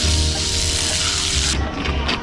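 A thin stream of water from an outdoor tap splashing onto a foot in a foam sandal: a steady hiss of running water that cuts off about one and a half seconds in.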